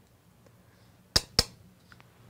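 Two sharp clicks about a quarter of a second apart, just past the middle, over faint room tone.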